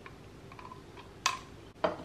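Two sharp clicks of kitchen utensils knocking, about half a second apart, over faint room tone.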